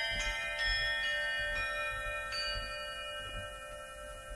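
Tuned bells struck one after another, about five notes in the first two and a half seconds. The notes overlap and ring on, slowly dying away.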